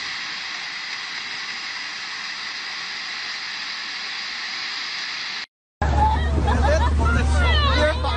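Steady, even rush of flowing floodwater with no rhythm or breaks, cutting off abruptly about five and a half seconds in. After a short silent gap, several voices talk over a loud, low, steady hum.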